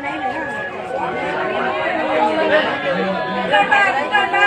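Chatter of a group of people all talking at once in a room, with no single voice standing out.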